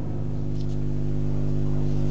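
A steady low drone of several held tones, getting slowly a little louder, with a couple of faint high ticks: an outro sound or music bed under the closing logo.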